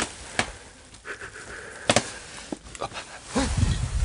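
A few sharp knocks and clicks of objects being handled and bumped among clutter, the loudest about two seconds in, with a brief scrape a little after one second and a low rumble of handling noise near the end.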